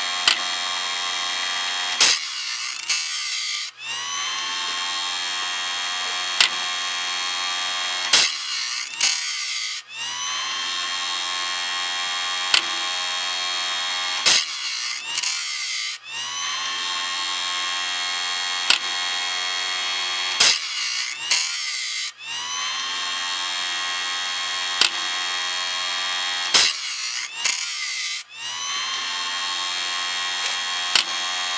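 Grinder motor of a homemade cam-driven band saw blade sharpener, running steadily while it sharpens a Wood-Mizer silver tip bandsaw blade. About every six seconds the wheel grinds a tooth in a short harsh burst, then the motor whine climbs back up to speed. A single sharp click comes midway between grinds, five cycles in all.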